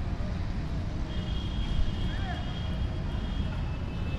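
Outdoor city ambience: a steady low rumble of traffic, with distant voices. A thin, steady high tone joins about a second in.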